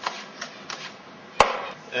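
Kitchen knife chopping fresh herbs on a cutting board: a few uneven knife strikes, with one much sharper and louder strike about one and a half seconds in.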